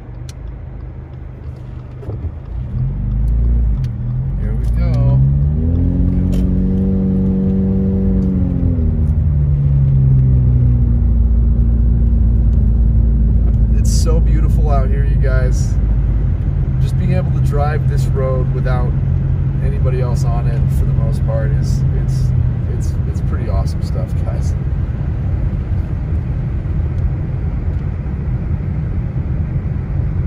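Car engine and tyres on a snowy road heard from inside the cabin: a steady low road rumble, with the engine note rising then falling back a few seconds in as the car accelerates. In the middle there are brief voice-like sounds with clicks.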